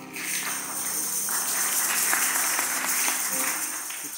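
Maracas and other hand percussion shaken in a continuous rattle by a group of children as their song ends.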